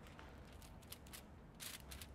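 Very faint rustling and a few light clicks as aluminium hair foil is handled and a tint brush works against it.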